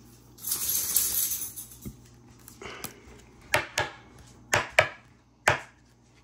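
Baseball trading cards and their packaging being handled on a table: a crinkly rustle lasting about a second, then five sharp clicks and taps in the second half as cards are shifted and set down.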